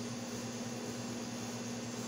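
A steady low hum under an even faint hiss, with no change through the pause.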